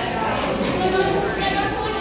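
Voices of people talking in the background of a large room, with the plastic clicking of a Yuxin 4x4 speed cube being turned during a solve.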